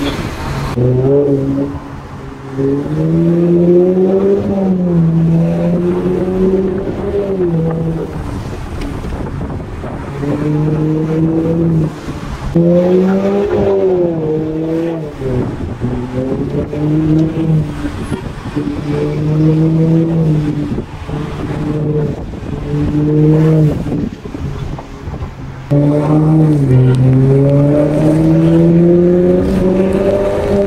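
Audi A4's turbocharged four-cylinder engine heard from inside the cabin under hard acceleration, its note climbing in pitch and dropping back at each gear step, over and over. The longest pulls come about three seconds in and near the end.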